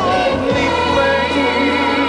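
A children's choir singing a song with musical accompaniment, holding long notes.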